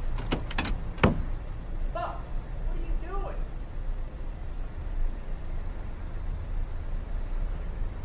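A break in the music: a steady low rumble of a running vehicle, with three sharp clicks in the first second and two short vocal sounds about two and three seconds in.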